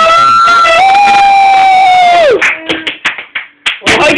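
A voice holding two long high notes in a row, the second falling away about two seconds in, then a few scattered claps and shouts from a small group.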